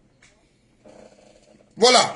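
A man's voice: mostly quiet with a faint murmur, then he bursts loudly back into speech near the end.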